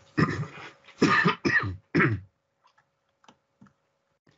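A man coughing hard about four times in quick succession over the first two seconds, followed by a few faint clicks.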